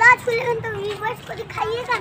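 A young child's high-pitched voice calling out in several short, loud cries and babbling sounds.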